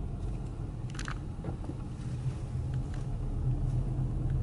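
Car engine and road noise heard from inside the cabin while driving and turning: a steady low rumble, with a brief click about a second in.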